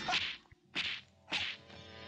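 Three short, sharp swishing whooshes about half a second apart: dubbed kung fu film fight sound effects for fast limb movements and strikes.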